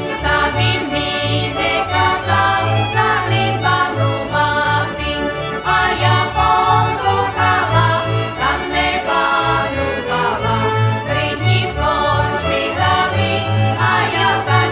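Eastern Slovak (Rusyn) folk song played by an accordion-led folk band, with a steady bass beat underneath.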